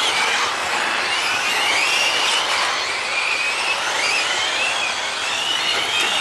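Several 1/8-scale electric GT RC cars racing. Their brushless motors and drivetrains make a high whine that rises and falls in pitch again and again as they speed up and slow down, over a steady hiss.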